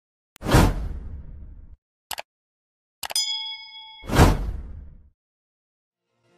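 Transition sound effects: a whoosh, a short click, a bright ding that rings for about a second, then a second whoosh.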